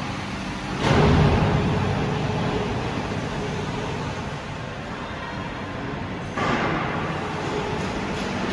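Steady rumbling machinery and room noise in a factory hall, with a louder rush of noise about a second in and another shortly before the end.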